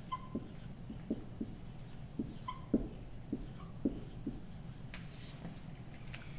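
Dry-erase marker writing on a whiteboard: a run of short, irregular strokes and taps, with two brief high squeaks of the tip, one at the start and one about two and a half seconds in.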